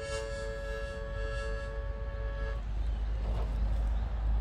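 Harmonica music holding a sustained chord that cuts off about two and a half seconds in, over a steady low rumble of wind on the microphone.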